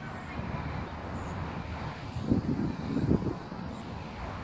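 Wind buffeting a phone microphone over a low outdoor rumble, with a few stronger gusts a little past halfway through.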